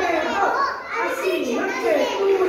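Young children's voices talking and calling out over one another without a break.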